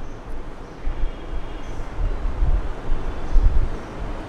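Air buffeting a close microphone: a gusty low rumble with a steady hiss underneath, swelling and easing several times.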